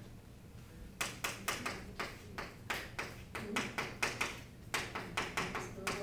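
Chalk writing on a blackboard: a quick run of sharp taps and short scratchy strokes, about three or four a second, starting about a second in.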